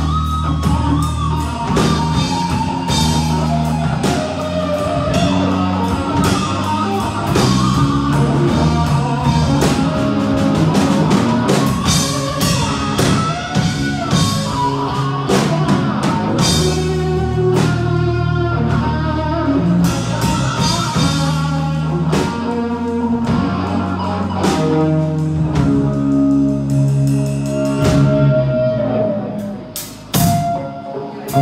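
A live rock band playing: electric guitars over bass and a drum kit.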